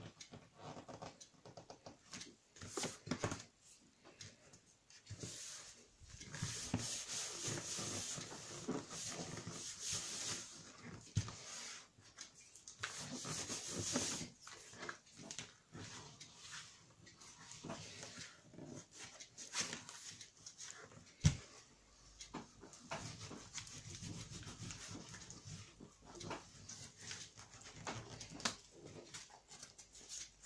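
Hands rubbing and pressing a freshly glued sheet of paper flat onto a cardboard album page: irregular spells of skin-on-paper rubbing and scraping with small clicks, and one sharp knock about two-thirds of the way through.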